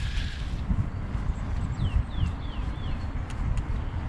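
Wind buffeting a chest-mounted action camera's microphone over the low rumble of mountain bike tyres rolling on a gravel forest road. About halfway through come four short, high, falling chirps.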